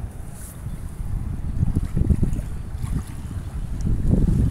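Wind buffeting the microphone in irregular gusts over water rushing and splashing around a foam board and a sea turtle carcass being towed on a rope.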